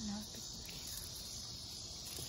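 Steady high-pitched insect chorus, an even unbroken trill, with a brief murmur of a man's voice right at the start.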